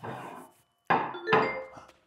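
A short snatch of music, with a ceramic plate set down on a wooden table with a knock about a second in.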